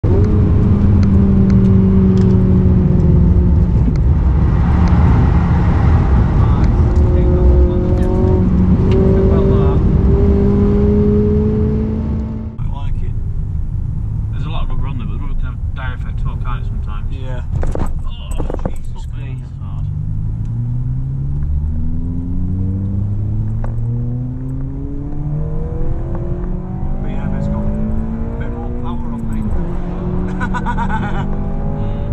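Cabin sound of a Honda Civic Type R's 2.0-litre four-cylinder K20 engine under hard acceleration. For the first twelve seconds it is loud and holds a high, fairly steady note. After a sudden drop in level, the engine note climbs repeatedly through the revs and falls back at each upshift.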